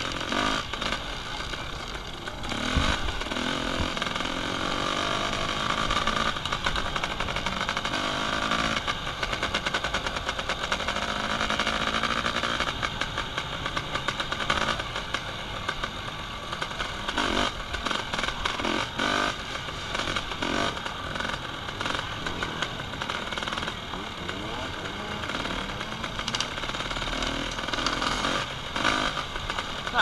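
Dirt bike engine heard from on the bike, running continuously under load over rough ground, its revs rising and falling with the throttle.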